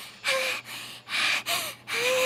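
A female cartoon voice giving a run of sharp, rhythmic gasping breaths, about two a second, with no music under them.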